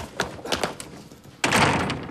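Wrought-iron gate knocking and rattling as it is pushed open, then shut with a loud slam about a second and a half in.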